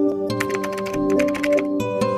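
A quick run of computer keyboard key clicks, a typing sound effect, over steady background music.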